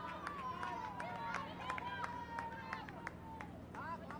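Voices shouting across a football pitch during a goalmouth scramble, one long held call sliding slowly down in pitch, over a rapid patter of sharp claps or knocks.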